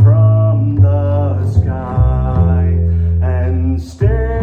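A man singing a slow melody to his own plucked double bass, the deep bass notes sustaining under the voice and changing about once a second.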